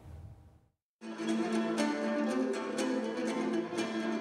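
After about a second of near silence, a violin and a fretted lute start playing folk music together: held fiddle notes over quick plucked lute notes.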